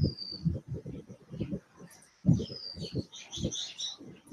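Birds chirping, short high whistled notes at the start, around the middle and in a quick cluster near the end, heard through a video-call microphone over irregular low thumps.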